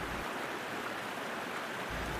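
Spring-fed creek water rushing and splashing down a small cascade, a steady even hiss.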